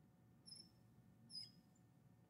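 Two short, faint squeaks of a marker on a glass writing board as a character is drawn, about half a second and a second and a half in, over near silence.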